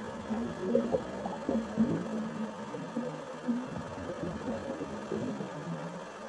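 Scuba divers' exhaled bubbles gurgling underwater, recorded through the camera housing: a continuous, uneven burble.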